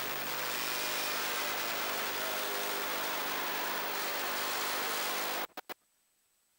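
Onboard sound of an autograss Junior Special racing car's engine running under way, with steady engine tones under a heavy hiss of wind and dirt-track noise. The sound cuts off suddenly about five and a half seconds in, after two short blips, leaving near silence.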